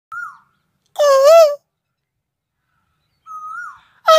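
An Asian koel calls twice, faint and brief, and each call is answered by a man loudly imitating it with a wavering, hooting 'koo-oo' note about half a second later.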